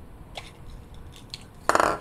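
A 3D-printed plastic flashlight being taken apart by hand: a few light plastic clicks, then a short, louder scraping rasp near the end as the cap comes off the body and is set down on the desk.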